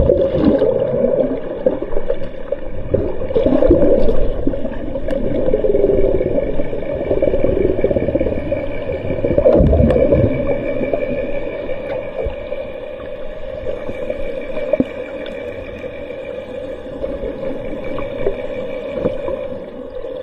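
Muffled underwater sound from a camera submerged with swimmers: water rushing and bubbling as they dive, over a steady faint hum. It is loudest in the first half and grows quieter toward the end.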